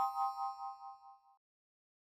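A bright chime sound effect: a ding of several steady ringing tones that waver in a pulsing way as they fade out, gone within about a second and a half.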